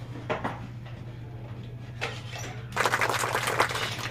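Wooden window trim being handled: a few light knocks, then a loud rattling scrape lasting about a second near the end, over a steady low room hum.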